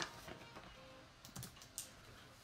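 A few faint, sharp clicks and taps in a quiet room, one near the start and three more spread over the second half.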